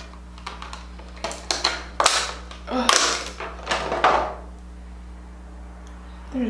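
Clicks, taps and knocks of makeup items being handled on a tabletop, with a palette and brush picked up and set down in an irregular run for about the first four seconds.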